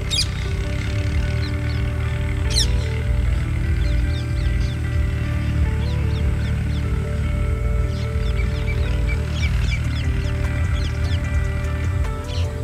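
Background music of long held notes that step up and down in pitch, with birds chirping over it now and then.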